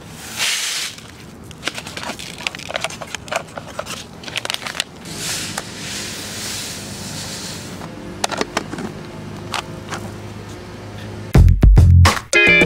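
Small seeds poured from a packet into the clear plastic hopper of a Jang hand seeder: a rattling hiss as the seed runs in, twice, with clicks of the hopper and packet being handled in between. Loud funky guitar music starts near the end.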